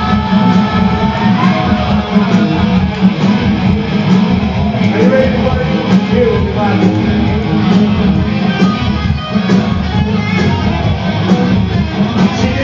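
Live punk rock band playing loud and steady, electric guitars strumming over bass.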